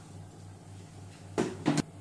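Black plastic lid of a Silvercrest Monsieur Cuisine Connect food processor being set on its steel mixing bowl and locked: two sharp knocks about a second and a half in, a third of a second apart.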